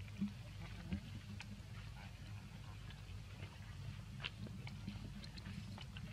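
Faint scattered rustles and small clicks from a baby monkey picking through dry leaf litter, over a steady low hum.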